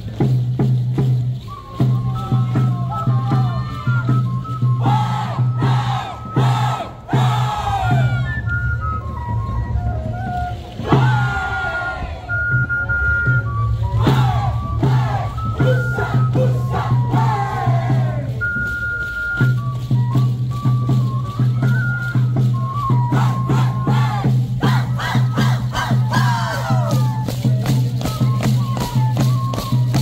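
Live Andean contradanza music: a high, piping melody of held notes over steady rhythmic percussion and a constant low drone. It is broken several times by high whooping shouts that fall in pitch.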